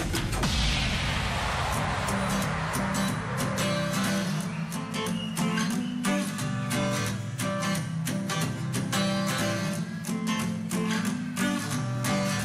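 Instrumental intro of a pop backing track: strummed guitar chords over a steady beat, opening with a falling whoosh in the first couple of seconds.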